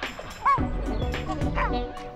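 Chimpanzee calls: short yelps that rise and fall in pitch, about half a second in and again near the end, over background music.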